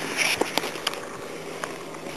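Handling noise from a handheld camera gripped with the hand over the lens: skin and fingers rubbing near the microphone, with about three sharp clicks.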